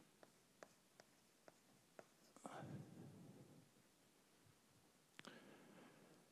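Chalk writing on a blackboard, heard faintly: a series of short taps about every half second, another tap near the end, and a soft murmured word about halfway through.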